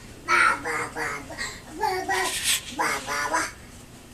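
A toddler babbling in a quick run of short syllables, with a brief breathy sound midway; it stops about three and a half seconds in.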